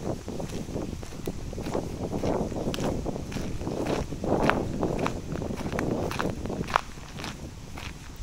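Footsteps crunching on a gravel and dirt park path at a steady walking pace, about two steps a second. One sharper click, about two-thirds of the way through, is the loudest moment.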